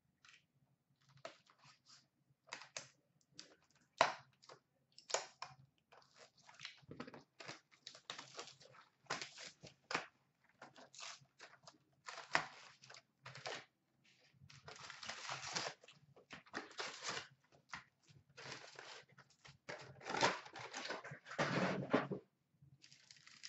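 A hockey card hobby box being opened and its packs torn apart by hand: irregular tearing and crinkling of pack wrappers with small clicks of cardboard and cards, busier in the second half.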